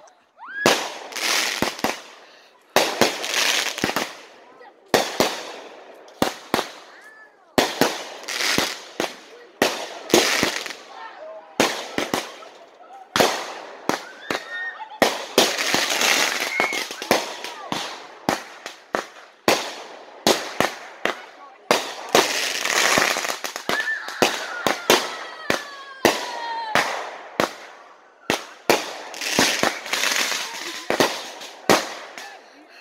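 Consumer fireworks going off: a rapid series of sharp bangs and crackles, coming in clusters every second or so with short gaps between them.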